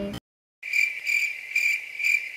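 Cricket chirping sound effect: a steady, high, pulsing chirp about twice a second. It starts abruptly after a brief dead-silent gap, the kind of edited-in 'crickets' effect laid over a black cut.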